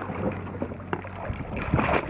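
Hooked mahi-mahi (dolphin fish) thrashing and splashing at the surface. Wind buffets the microphone over a steady low hum.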